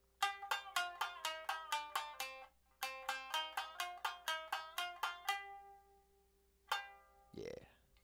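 Tsugaru shamisen played with rapid alternating down- and up-strokes of the bachi: two quick runs of plucked notes of about five or six strokes a second, with a short break between. A single struck note rings near the end.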